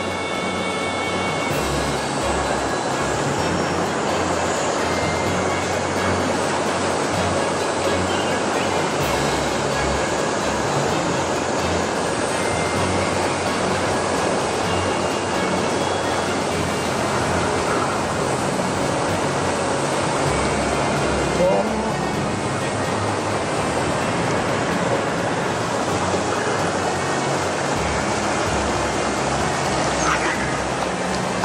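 Shallow rocky river rushing over stones and riffles, a steady, even wash of flowing water.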